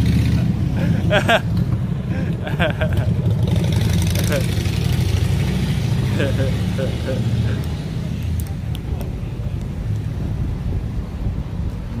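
A car engine running close by on the street, a steady low rumble that fades after about eight seconds, with snatches of voices over it.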